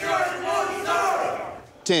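A group of men shouting together in unison, a loud drill-style call-and-response. It falls away about a second and a half in, and a single voice barks a count just before the end.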